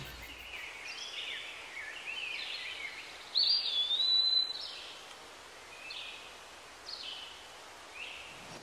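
Birds chirping faintly over a steady background hiss. The loudest call, about three and a half seconds in, is a clear whistled note that rises and then holds for about a second.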